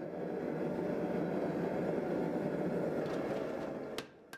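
A steady low roar of noise with no distinct strikes in it, cutting off abruptly at the end.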